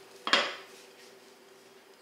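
A single sharp metallic clink from a pair of kitchen scissors, about a third of a second in, while cooked bacon is being cut with them.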